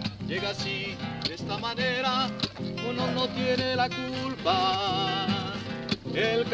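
Classical nylon-string acoustic guitar played with steady plucked chords, and a voice singing along in wavering held notes, most strongly about two seconds in and again near the end.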